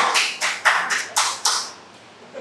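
Short run of hand clapping: distinct, evenly spaced claps at about six a second that stop a little before two seconds in.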